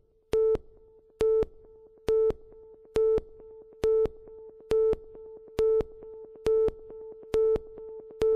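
Synthesized electronic beeps: a short tone at one pitch repeats evenly a little faster than once a second, nine times. Beneath it a steady held tone at the same pitch slowly grows louder, typical of the opening of an electronic music track.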